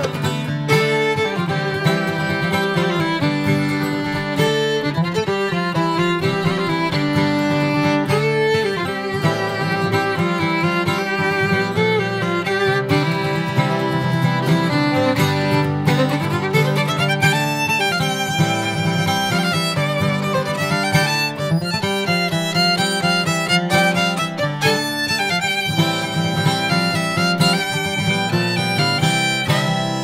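Fiddle and acoustic guitar playing a tune together without singing: the fiddle is bowed on the melody over guitar accompaniment, with quicker fiddle runs in the second half.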